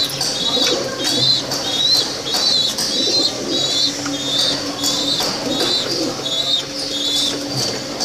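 A flock of pigeons in a loft: low cooing and wing flaps, with a short high chirp repeating about once a second.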